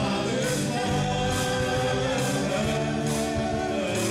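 A country gospel band playing live: fiddle, guitars, bass guitar and keyboard, with several voices singing together. A steady beat accent sounds about once a second.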